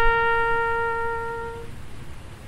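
Trumpet holding one long, steady note that slowly fades and stops about three-quarters of the way through, leaving a short pause before the next phrase.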